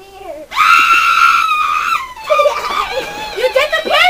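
A shrill, high-pitched scream held steady for about a second and a half, followed by voices and laughter.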